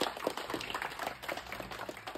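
Audience applause: dense, irregular clapping that thins out and fades away.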